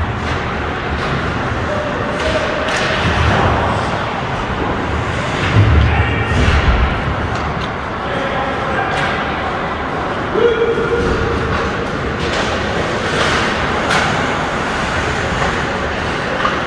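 Ice hockey play in a rink: scattered knocks and thuds of puck, sticks and players against the boards, the heaviest about six seconds in, over a steady noisy hall background with distant voices.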